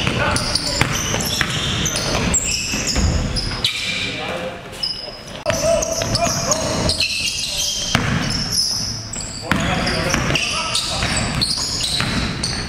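Basketball being dribbled on a hardwood gym floor, repeated sharp bounces, with short high squeaks of sneakers and players' shouts, all echoing in the large hall.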